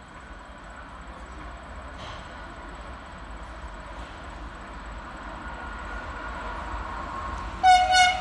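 Stadler Euro6000 electric locomotive hauling a container train toward the platform, its running noise growing steadily louder. A faint rising whine builds over the last few seconds, and just before the end the locomotive sounds a loud horn blast.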